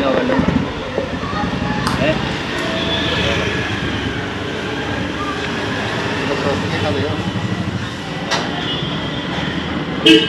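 A vehicle engine running with a steady low rumble, under faint background voices.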